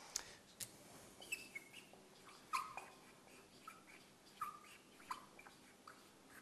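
Marker squeaking on a whiteboard while words are written: a string of short, high squeaks, some sliding in pitch, with a few light taps.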